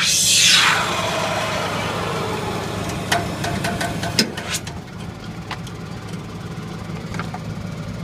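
Tractor engine running steadily, with a falling whoosh in the first second and a few light clicks and knocks a few seconds in.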